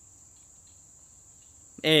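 Crickets trilling, a steady high-pitched drone, with a man's voice starting near the end.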